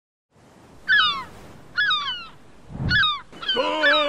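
Gulls calling: four short, falling calls about a second apart, with a low swell of noise near the third. A sustained music chord comes in near the end.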